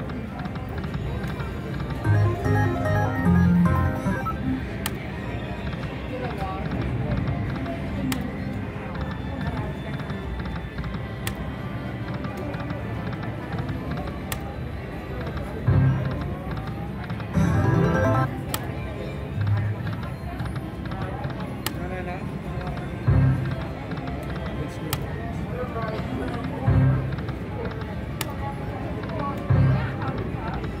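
Aristocrat Buffalo slot machine playing its electronic game music and reel sound effects through spin after spin, with a short low burst of sound every few seconds, over background voices.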